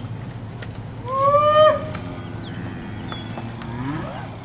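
A steer bawls once, a high call of under a second that rises and then holds, followed by a fainter, lower moo that swings upward near the end.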